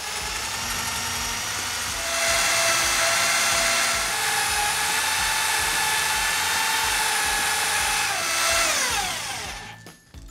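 Corded electric drill running steadily with a wide bit boring into pine planks; its whine gets louder about two seconds in, then winds down in pitch and stops near the end as the drill is switched off.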